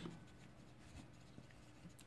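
Faint scratching of a pen writing words by hand on paper, with a few light ticks of the nib.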